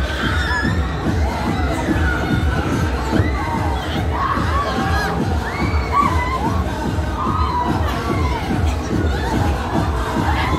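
Riders on a spinning fairground thrill ride screaming and shouting throughout, many voices rising and falling in pitch, over a steady low rumble.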